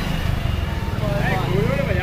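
A small pickup truck's engine running as it pulls away, with men's voices calling out over it from about a second in.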